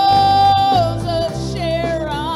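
A woman singing a gospel song, holding one long note that then slides lower, over keyboard accompaniment with repeated low bass notes.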